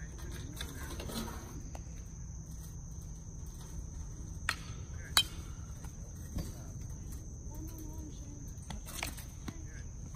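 Metal youth baseball bat hitting a pitched ball: one sharp ping about five seconds in, just after a smaller click. Insects chirr steadily and high-pitched throughout.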